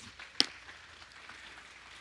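A single sharp click about half a second in, over faint room noise.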